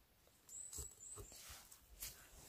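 Faint handling noise: soft rustles and low knocks from a gloved hand holding a bunch of picked mushrooms, starting about half a second in, with a brief thin high squeak near the middle.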